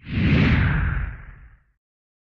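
Whoosh sound effect over a deep rumble, marking an animated logo sting. It starts at full strength, its hiss slides downward, and it fades out after about a second and a half.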